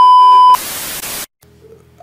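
Television test-card sound effect used as a video transition: a loud, steady test-tone beep lasting about half a second, followed by a burst of TV static hiss that cuts off suddenly.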